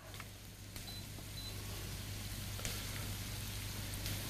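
An open telephone line on air with no one speaking: a steady hiss over a low hum, with a few faint clicks and short high beeps, a caller's line that has connected but stays silent.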